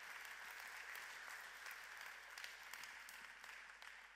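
Audience applauding, faint, with a dense patter of claps that begins to die away near the end.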